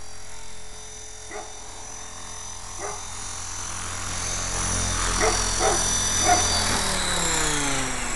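Electric motor and rotor of an Esky Honeybee Belt CP RC helicopter whining steadily, with a dog giving about five short barks. Near the end the whine falls in pitch as the rotor slows.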